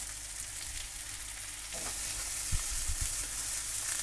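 Sliced onion and boiled chicken sizzling in hot oil in a wok, stirred and tossed, with a couple of short knocks. The sizzle grows louder a little under two seconds in.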